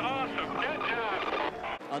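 A man talking over a stock car's V8 engine, whose note falls slowly and steadily as the car slows. The sound cuts off abruptly near the end.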